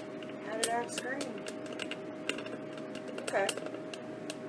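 Electric food dehydrator running with a steady hum, with scattered sharp clicks and a few brief voice-like sounds over it.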